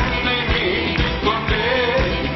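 Live praise-and-worship song: men singing the melody into microphones, backed by an accompaniment with a steady beat of about two strokes a second.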